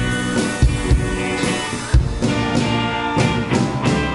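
Live band playing an instrumental passage: a drum kit beats under electric guitar and other sustained instrument parts.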